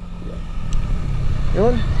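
Suzuki Raider 150 Fi's single-cylinder four-stroke engine idling steadily.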